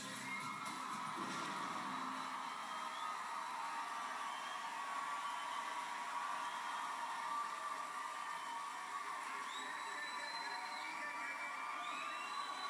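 Studio audience cheering and whooping, heard through a television speaker, with a few short rising whistles in the second half.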